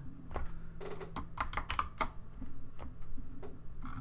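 Computer keyboard keystrokes: an irregular string of sharp clicks over a faint, steady low hum.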